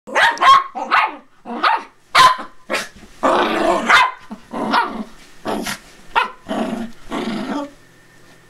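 Small dogs barking and growling in play: about a dozen short, loud barks in quick succession, one of them drawn out longer a little past three seconds in.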